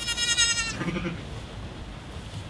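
A newborn lamb bleating once: a short, high-pitched bleat, followed straight after by a brief, softer, lower sound.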